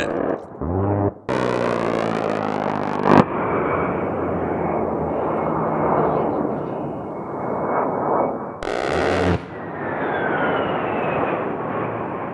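A-10 Thunderbolt II's GAU-8 Avenger 30 mm rotary cannon firing in buzzing bursts: a long one of about two seconds near the start and a shorter one about nine seconds in. Between the bursts the jet's turbofan engines run loud, with a whine that falls in pitch as it passes.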